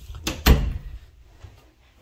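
Interior closet door pushed shut by hand: a light knock, then a solid thump against the frame about half a second in.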